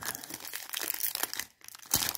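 Foil wrapper of a trading-card booster pack being torn open and crinkled in the hands: dense crackling for about a second and a half, then quieter, with one sharp crackle near the end.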